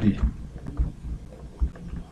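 Several dull, low thumps at uneven intervals, with a few faint clicks; a spoken word trails off at the start.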